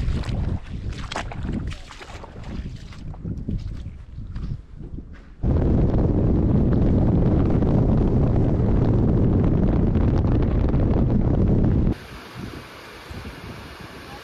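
Feet in sandals splashing step by step through a shallow stream. About five seconds in this gives way to a loud, steady rush of wind on the microphone from a moving vehicle, which cuts off about two seconds before the end.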